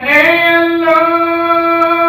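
A man singing a naat without accompaniment through a microphone: after a breath, his voice slides up into one long, steady held note.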